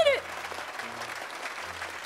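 Applause with crowd cheering, a sound effect laid over a short intro jingle, steady after a voice's call cuts off right at the start.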